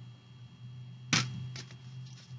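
A single sharp snap of tarot cards being handled, about a second in, over a faint steady low hum.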